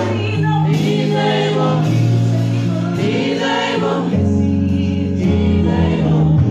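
Live gospel praise-and-worship singing: a woman's lead voice over a microphone with a group of backing singers, on keyboard accompaniment with held bass notes that change every second or two.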